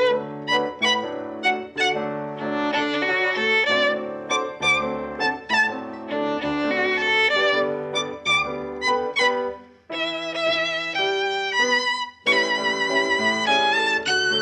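Violin playing a melody with vibrato, accompanied by piano, with short breaks in the phrase about ten and twelve seconds in.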